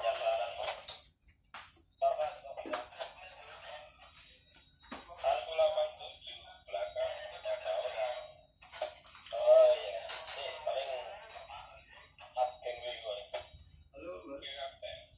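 Thin, band-limited voice talk over a handheld two-way radio on the ship's bridge, in several stretches of speech with short gaps between.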